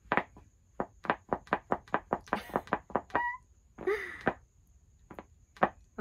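Plush bunny hat with air-pump paws being squeezed to make its floppy ears flap up: a quick run of short soft clicks, about six a second, then a brief hissing burst and a few scattered clicks.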